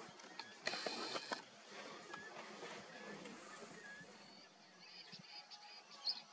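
Faint outdoor ambience: a brief rustling noise about a second in, then scattered short, high bird chirps, with a quick run of chirps near the end.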